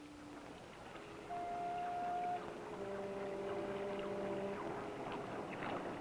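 Foghorn sound effect for a cartoon: a higher horn note about a second in, then a lower, longer horn blast lasting nearly two seconds.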